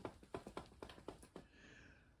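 Near silence broken by about a dozen faint, irregular light clicks over the first second and a half.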